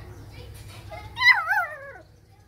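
A young dog whining: one high, wavering cry starting about a second in that slides down in pitch over the next second.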